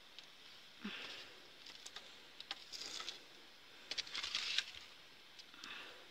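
Faint crackling of the wood fire burning inside a clay bread oven: scattered sharp clicks and a few short soft hissing bursts, about one, three and four seconds in.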